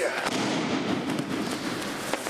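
An aikido partner thrown with irimi nage hitting the mat in a backward breakfall: a few sharp slaps and thuds on the mat near the start, then about a second of scuffling noise as the body rolls.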